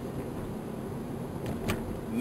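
Steady low rumble of background noise, with two faint clicks near the end.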